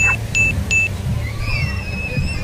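Three short, identical electronic beeps about a third of a second apart: the sound effect of a subscribe-reminder bell animation. In the second half come a few gliding, warbling tones, over a steady low rumble of surf and wind on the microphone.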